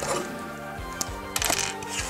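Sharp clicks and taps of hard plastic parts of an X-Transbots X1 transforming robot figure being handled, with a cluster of clicks about one and a half seconds in, over background music.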